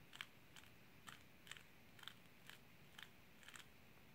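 Faint clicking of a QiYi Valk 3 speed cube's layers being turned one move at a time, about two clicks a second, as an algorithm is performed.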